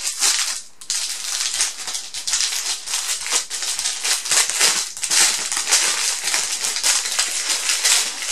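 Clear plastic packaging crinkling continuously as it is handled and pulled off a small boxed item.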